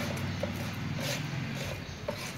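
A small hand tool scraping and stirring wet cement mortar on a round tray, with a few short scrapes about half a second and a second in, over a steady low hum.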